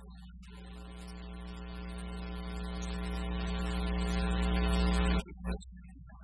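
A single sustained droning tone with many overtones over a steady electrical hum, swelling steadily louder for about five seconds and then cutting off suddenly.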